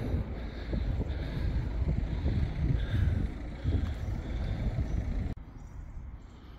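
Wind buffeting the microphone: an uneven low rumble that rises and falls, cutting off suddenly about five seconds in.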